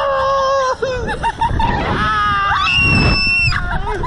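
Two riders on a slingshot ride screaming and laughing as they are flung through the air. There is a long held scream at the start, a rising one about two seconds in, and a very high shriek near three seconds. A steady low rush of wind runs over the microphone underneath.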